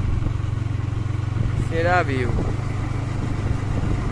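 Motorcycle engine running steadily while riding at road speed, a low even drone throughout. A short vocal sound cuts in briefly about two seconds in.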